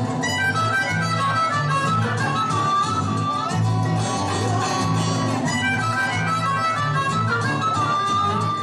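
Blues harmonica played cupped against a hand-held microphone, a melody with sliding, bent notes, over guitar backing with a steady repeating bass rhythm.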